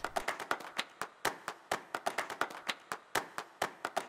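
Percussion backing track of sharp claps and taps, several a second in a quick, lively pattern.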